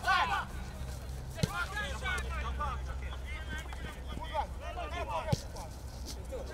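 Voices of spectators and players calling out and chattering around a football pitch, with two short sharp thumps, one about a second and a half in and one past five seconds, over a steady low rumble.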